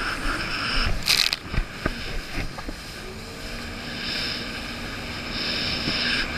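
Jet ski engine running at low speed on choppy water, with water noise and a burst of splashing about a second in.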